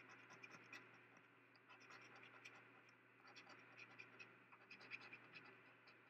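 Faint, irregular scraping of a coin rubbing the latex coating off a scratch-off lottery ticket, over a steady low fan hum.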